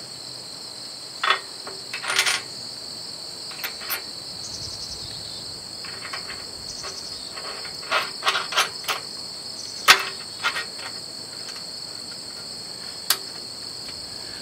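Small metal clinks and taps of carriage bolts and nuts against a steel implement frame as they are fitted by hand, scattered through and bunched near the middle, with the sharpest knock about ten seconds in. Under them runs a steady high-pitched insect chorus.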